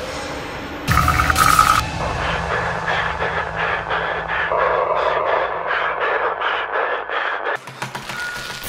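Horror-trailer sound design: a sudden loud impact hit about a second in, then a tense stuttering drone pulsing about three times a second that cuts off abruptly near the end.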